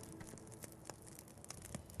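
A quiet background with a few faint, scattered clicks and rustles.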